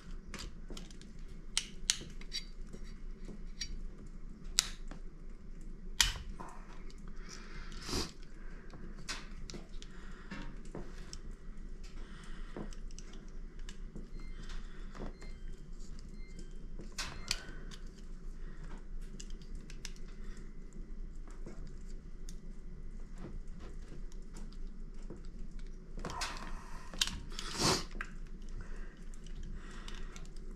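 Scattered small clicks and scrapes of a utility knife blade shaving the plastic limiter caps off the high and low mixture screws of a Husqvarna 353 chainsaw's carburetor, with a louder run of scraping near the end. A steady low hum runs underneath.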